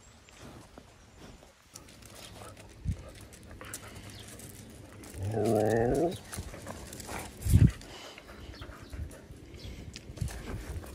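A low, wavering vocal moan about five seconds in, lasting about a second, then a short dull thump a little later.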